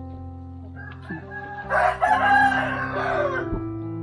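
A rooster crows once, starting a little under two seconds in and lasting about a second and a half, over steady background music.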